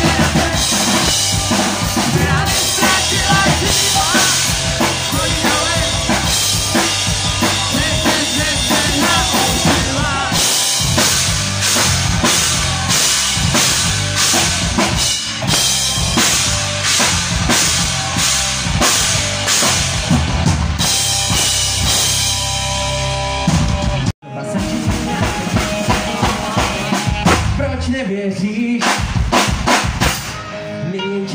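Live rock band playing loud: electric guitars and a drum kit with a steady beat, and a vocalist singing into the microphone. About three-quarters of the way through the whole band stops dead for a split second, then crashes back in together.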